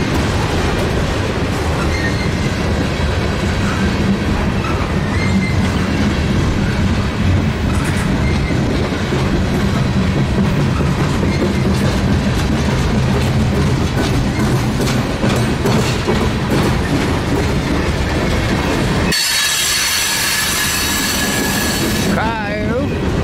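Freight cars of a long mixed train rolling past close by: a steady loud rumble of wheels on rail with clicks over the joints. In the last few seconds the rumble falls away and a high wheel squeal takes over.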